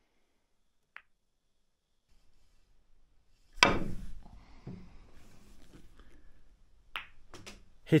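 A snooker cue strikes the cue ball sharply about three and a half seconds in, and the balls clack together, followed by a softer knock a second later. Another sharp ball click comes near the end, with a faint click about a second in.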